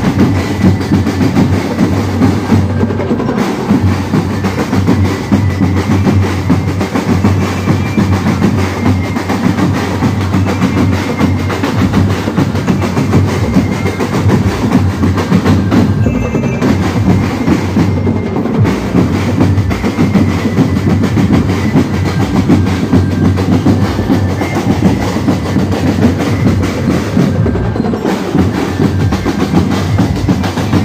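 Street drumline of marching snare and bass drums playing a loud, continuous beat at close range.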